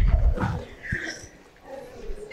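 A woman laughing into a handheld microphone: a loud burst in the first half second that trails off.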